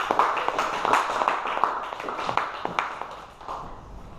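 Applause from a small group of people clapping, dying away over about three seconds.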